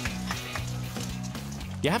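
Eggs frying in near-boiling olive oil in a frying pan, a steady sizzle, with background music's bass notes underneath.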